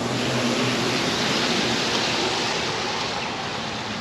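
Steady rush of street traffic, mostly tyre noise, swelling slightly between one and two seconds in as vehicles pass and easing toward the end.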